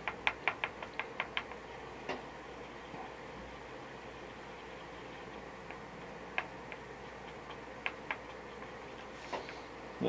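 Light, quick clicks of a stir stick knocking against a small paint container as paint is mixed and thinned, about seven a second at first, then a few scattered single taps, over a faint steady hum.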